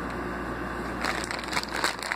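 Plastic zip-lock bag crinkling as it is handled, a run of irregular crackles starting about a second in.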